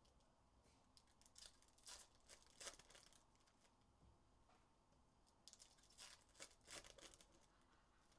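Faint crinkling and tearing of a foil trading-card pack wrapper, with cards being handled, in two short bursts of rustling about a second and a half in and again near the end.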